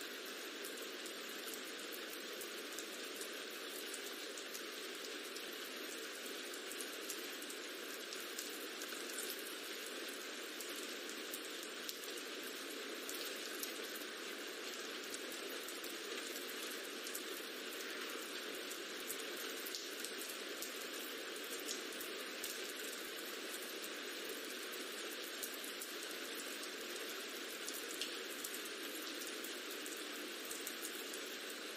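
Rain ambience track: steady rain with a fine patter of scattered drops, unchanging throughout.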